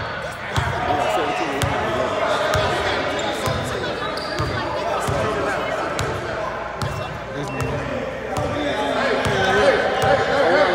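A basketball bouncing repeatedly on a hardwood gym floor, a dull thump roughly once or twice a second, with the chatter of voices echoing around the hall.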